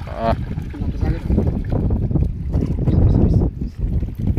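River water sloshing and splashing as a trap net full of small fish is worked in the water, with wind rumbling on the microphone; a brief voice sounds right at the start.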